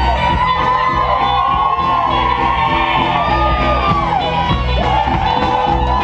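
Live country band playing an instrumental break: electric guitar lead with many bent notes over strummed acoustic guitar, bass and drums, with whoops and shouts from the crowd.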